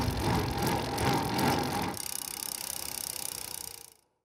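Intro logo sound effect: a whooshing rush with a low rumble under it, thinning about halfway and fading out just before the end.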